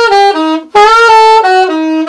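Alto saxophone playing a short jazz line of separate tongued notes, breaking off briefly about three-quarters of a second in. The accents are played with the jaw moving up and down, which gives them a twang: the wrong way of accenting.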